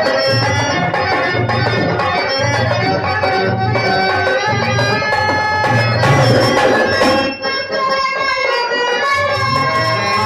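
Harmonium playing a melody of held and moving reed notes over a dholak rhythm, the drum's deep strokes coming about twice a second. The drum drops out for about two seconds late on while the harmonium carries on.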